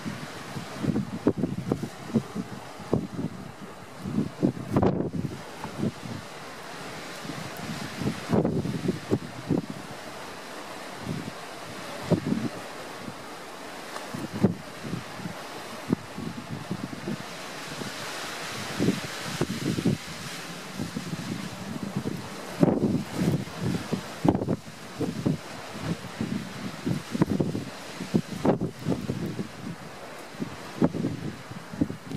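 Wind buffeting the microphone in irregular gusts, heard as uneven low rumbles over a steady rush of wind.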